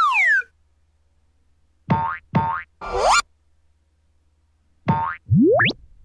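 Cartoon sound effects: a falling whistle-like glide at the start, two short pitched blips about two seconds in, then rising slide-whistle-like glides near three seconds and again about five and a half seconds in.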